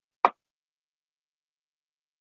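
A single short pop about a quarter second in, then silence.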